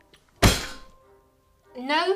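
A single heavy thunk about half a second in, dying away quickly.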